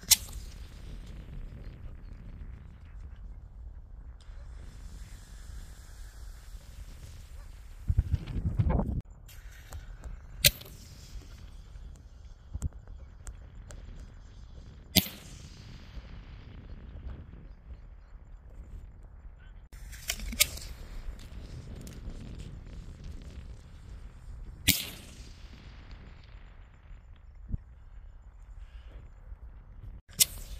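Aerial fireworks going off: several sharp bangs at uneven intervals, two of them close together about twenty seconds in, and a longer, deeper burst of noise lasting about a second about eight seconds in.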